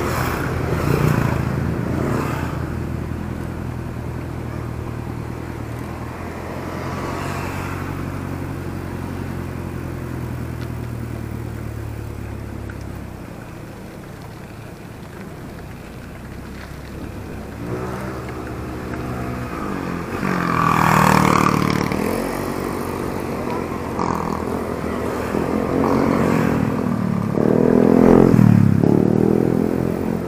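Motor vehicles on the road heard from a moving bicycle: a steady engine hum for the first dozen seconds, then vehicles passing close by about twenty and twenty-eight seconds in, their engine pitch rising and falling as they go by.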